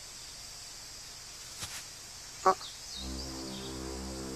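Anime soundtrack forest ambience: a faint steady high hiss with short bird chirps and one sharper call about two and a half seconds in. About three seconds in, a sustained low synthesizer chord of background music swells in and holds.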